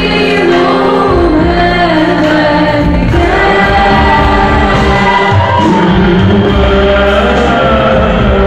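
A church worship team of men and women singing a Christian hymn together into microphones. The voices are loud and amplified, carrying a continuous melody over held low accompanying notes.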